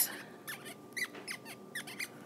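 Stylus squeaking against a tablet screen while handwriting is written, as a quick run of about eight or nine short, faint squeaks.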